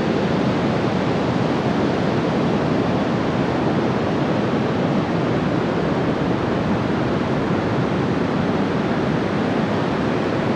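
Heavy ocean surf breaking on a beach, several rows of breakers at once, heard as a steady rushing wash of noise.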